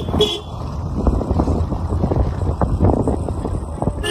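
Car driving on a narrow hill road, heard from inside: a steady low engine and tyre rumble with frequent small knocks and rattles from the uneven block-paved surface.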